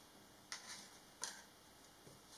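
Two faint, light clicks about three-quarters of a second apart as a small wooden kit part is handled and laid down on a wooden tabletop.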